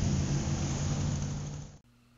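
Car engine sound effect: an engine running steadily at a low idle-like pitch, fading out near the end.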